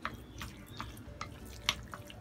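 Wooden chopsticks stirring a wet minced-pork filling in a glass bowl: short moist clicks and taps against the glass, about two or three a second.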